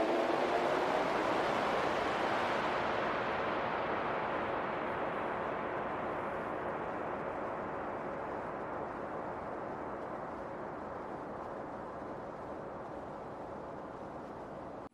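A steady rushing noise, like a wash of static, that slowly fades and grows duller throughout, with no tune or voice in it.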